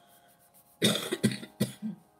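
A woman coughing in a quick run of about four coughs, starting about a second in, the first the loudest.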